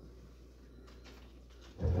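Quiet room with a few faint handling ticks as a bottle is held and turned; a man's voice starts up near the end.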